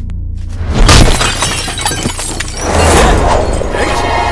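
Fight-scene sound effects over a film background score: a loud, sudden crash with a shattering tail about a second in, then the music swells near the end.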